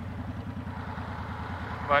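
Honda VTX 1300's V-twin engine idling at a standstill, a steady low, evenly pulsing beat.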